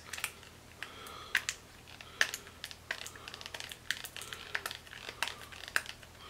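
Irregular crinkling and sharp clicks of a new cosmetic's packaging being worked open by hand; the packaging is hard to get into.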